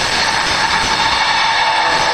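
Anime sound effect of a surging dark aura: a loud, steady rushing rumble with a held mid-pitched hum running through it.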